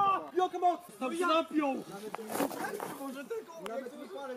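Men's voices talking; speech only.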